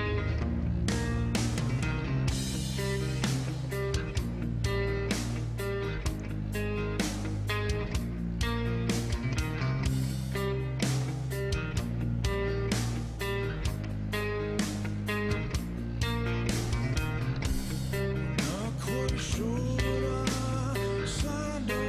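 Rock band music from a music video: electric guitar and a drum kit playing with a steady beat.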